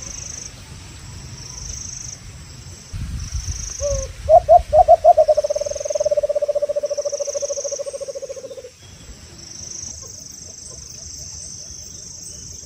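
Decoy dove (alimukon) calling from its trap cage: about six loud coos, then a long rolling purr that fades after a few seconds, the call used to lure wild doves. Insects buzz in regular pulses throughout, and a brief low rumble comes just before the call.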